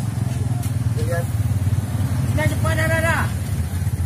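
A motor engine running steadily at idle, a constant low hum under the scene, with a voice heard briefly about two and a half seconds in.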